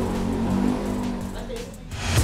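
A vehicle engine running with a steady low hum that fades away over the two seconds.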